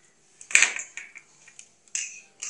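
A sharp click about half a second in, then a few softer taps: a crochet hook and small items being handled and set down on a wooden tabletop.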